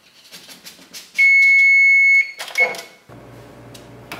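Electronic appliance beeper, plausibly the electric range's control panel: one loud, steady high beep about a second in, lasting about a second, then a short second beep. A few light taps come before it, and a faint steady hum begins near the end.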